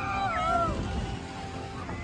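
A rider's high, wavering scream that slides up and down in the first second on a swinging fairground ride, over loud fairground music.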